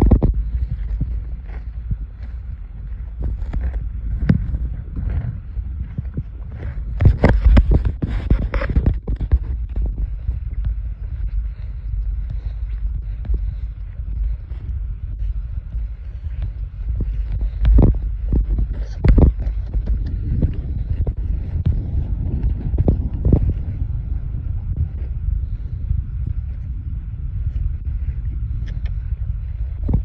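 Wind rumbling on a phone's microphone, with scattered knocks and rustles of handling, and a louder rustling stretch about seven to nine seconds in.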